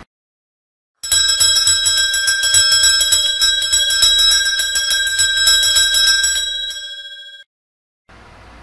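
Altar bell shaken in a rapid, continuous peal, coming in about a second in and dying away before cutting off near the end. It rings at the elevation of the host, marking the consecration.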